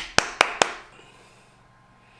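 Four quick, sharp hand cracks, about five a second, each followed by a short echo.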